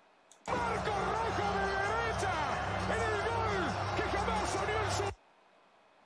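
Audio of a televised football-match highlight playing back: an excited voice with long gliding pitch over steady stadium crowd noise. It starts about half a second in and cuts off abruptly about five seconds in, when playback is paused.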